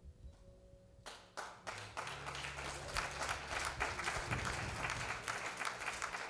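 Congregation clapping, starting about a second in and growing fuller.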